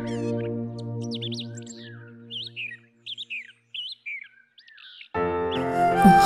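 Small birds chirping and twittering in quick, rapidly gliding calls while soft background music fades away in the first couple of seconds; about five seconds in, new background music with a flute begins.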